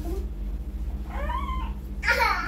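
A toddler's short whimpering cry, one high-pitched rising-and-falling wail about a second in, lasting under a second.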